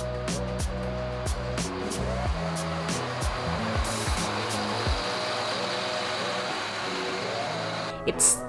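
Background music with a steady beat and bass line. A steady rushing noise swells underneath it in the middle, of the kind a bus's engine and tyres make.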